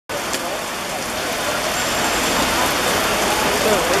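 Steady hiss of open-air ambience at a football pitch, with faint distant voices calling out, growing more distinct near the end.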